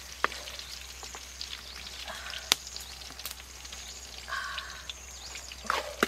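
Food frying in a wok over a wood fire, with a few sharp knocks of the wooden spatula against the pan.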